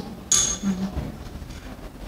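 A pause in a man's speech: a short hissy sound about a third of a second in, a brief low hum of his voice, then quiet room tone.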